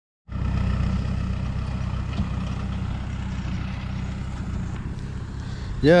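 Lorry engine running with a steady low drone, easing slightly quieter over a few seconds as the lorry, loaded with cut grass, moves off.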